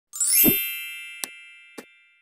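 Channel intro logo sting: a bright chime sweeps up with a low thump about half a second in, then rings on and slowly fades. Two short clicks sound over the fading ring.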